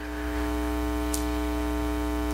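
Steady electrical mains hum with a buzzy stack of overtones, holding one unchanging pitch.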